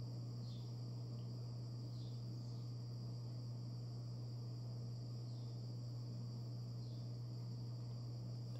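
Steady low electrical hum with a faint high whine over it, and a few faint short chirps scattered through it.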